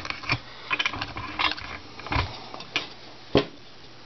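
Handling noise: a few light, irregular clicks and knocks as the bowl and camera are moved about, with one sharper click about three and a half seconds in.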